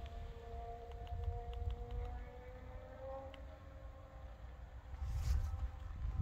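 Low rumble of wind and handling on the microphone outdoors, louder near the end with a brief rustle. A faint, distant two-note tone slowly rises and then falls in the middle.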